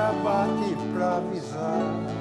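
Slow Brazilian country song (moda caipira) played on acoustic guitars, one a seven-string, with accordion, in the instrumental gap between two sung lines.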